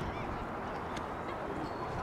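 Steady open-air background noise, with a faint short call near the start and a single sharp tap about a second in.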